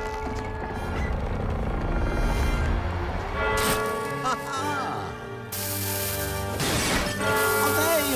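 Film score music with sustained notes. A match is struck about three and a half seconds in, then a hissing fizz sets in during the second half as the cake candle, a bomb's fuse, starts throwing sparks.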